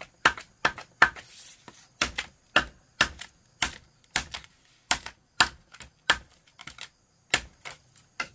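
Machete striking and splitting bamboo into strips: a run of sharp woody knocks, about two a second and unevenly spaced, a few of them trailing into a short rasp as the bamboo splits.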